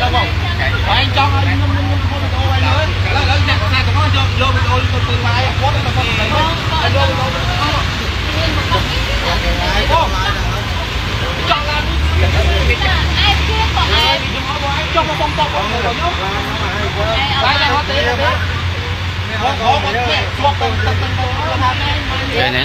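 A man and a woman arguing, their voices carrying throughout, over a steady low rumble of street traffic.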